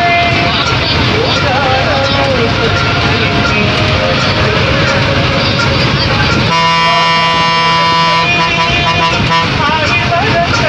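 Engine and road noise of a moving bus, heard from the driver's cab, with a wavering voice over it; about six and a half seconds in, the bus horn sounds one long steady blast lasting about two seconds.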